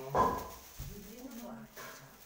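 A dog barking: one loud bark just after the start, then quieter calls about a second in and near the end.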